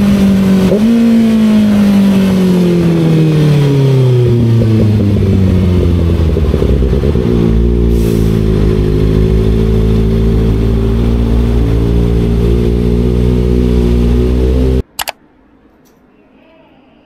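Sport motorcycle engine heard from the rider's seat, its pitch jumping up briefly about a second in as it downshifts, then falling steadily as the bike slows, and settling into a steady idle in slow traffic. It cuts off sharply near the end, leaving quiet room tone with a single click.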